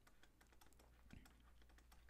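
Near silence, with faint scattered clicks and taps of a stylus on a tablet during handwriting.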